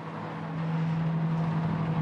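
Microwave oven running with a steady low hum, growing a little louder about half a second in.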